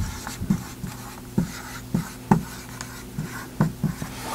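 Dry-erase marker writing on a whiteboard: short, irregular strokes and taps as letters are formed, several in a row.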